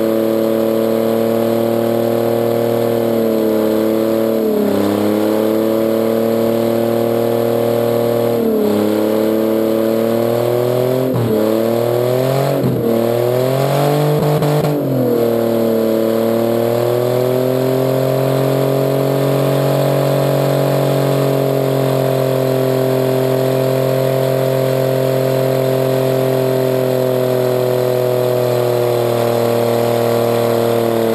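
Mercury Sable wagon's engine held at high revs in a stationary front-wheel-drive burnout, its front tire spinning on the spot. The revs dip and recover several times in the first half, then hold steady and high.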